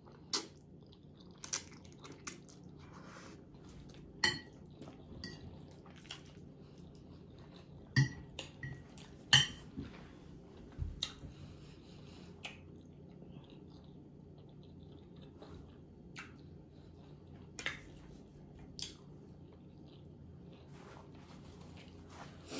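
Close-up chewing of a mouthful of spaghetti, with scattered short clicks and clinks of a metal fork against the plate, the loudest about eight and nine seconds in.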